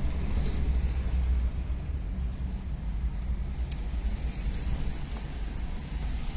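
Low, steady rumble of a car's engine and tyres heard from inside the cabin while driving, with a few faint, scattered light ticks or rattles.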